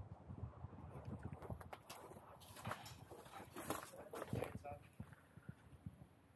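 Faint footsteps and knocks of a hand-held camera being carried on foot, with quiet voices in the background.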